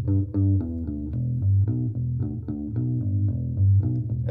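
Electric bass played with a pick, playing back a steady run of notes from a recording on its own. Its mids and highs are pulled down by EQ to soften the pick's click, with the low end pushed up and a touch of ambience and reverb.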